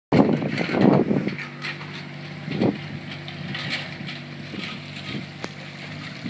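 Wind rushing over the microphone for about the first second, then a steady low hum of an idling engine, with a few brief gusts of wind noise and one sharp click near the end.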